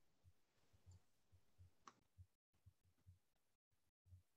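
Near silence: faint room tone over a video call, with soft low thuds repeating irregularly, a small click a little under two seconds in, and brief cut-outs of the audio in the second half.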